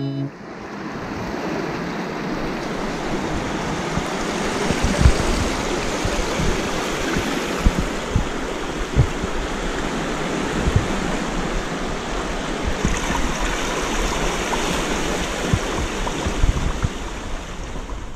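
Sea water washing and lapping against shoreline rocks: a steady rushing noise, with occasional short low thumps.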